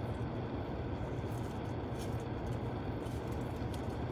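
Steady low hum inside a parked car's cabin, with a few faint scratches and clicks as a fingernail picks at a price sticker on a ceramic teacup.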